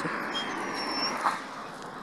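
A dog whimpering faintly: one short, thin, high whine about half a second in, over steady rustling noise.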